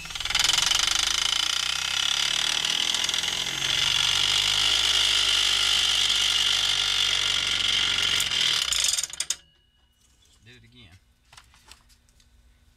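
Dremel rotary tool running with its silicone rubber wheel driving a spinning aluminium disc on an axle. It makes a loud, steady whir that grows a little stronger about three and a half seconds in and cuts off suddenly about nine seconds in.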